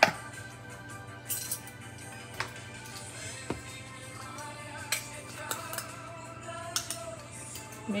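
Soft background music, with a few light clicks and clinks of kitchen utensils.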